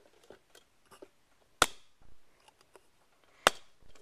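Two sharp knocks, about two seconds apart, with a few faint clicks between them: handling noise on a wooden table.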